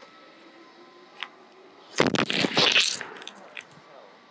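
A gymnast doing a backward roll on a foam floor mat: a sudden thud about two seconds in, then a brief rustling scuff of body and clothing on the mat. A few scattered sharp claps begin near the end.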